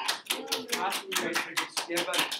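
A few people clapping in a classroom: quick scattered claps, about six a second, with voices mixed in.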